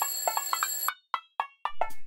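An alarm clock bell rings for about a second and cuts off suddenly, set over a run of short, quickly fading music notes that carry on after it.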